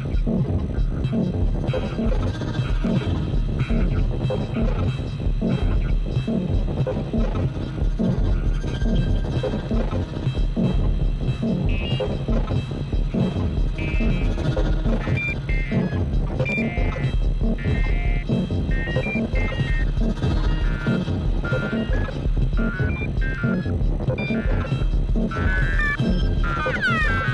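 Live experimental electronic music from a modular synthesizer setup: a dense, throbbing low pulse runs throughout. From about halfway through, short high blips scatter over it.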